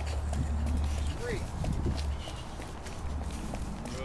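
Footsteps of a strongman walking with a heavy stone clasped to his chest in a stone carry, a run of quick, irregular footfalls over a low rumble on the microphone.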